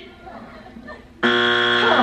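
Family Feud wrong-answer strike buzzer, a steady harsh buzz that cuts in suddenly about a second in: the answer given is not on the board.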